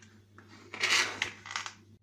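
A metal spoon scraping and clinking against an enamel saucepan as a salad is stirred, in a few short strokes, the loudest and longest a little before the middle.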